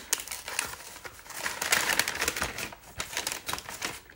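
Brown kraft packing paper crinkling and rustling as it is handled and unwrapped, a run of quick crackles that is loudest about two seconds in.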